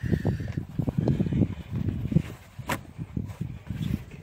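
Irregular rustling and handling noise close to the microphone, with one sharp click about two and a half seconds in.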